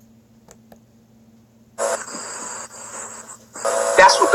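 Near silence with a faint steady hum, then a steady hiss comes in a little under two seconds in and lasts nearly two seconds.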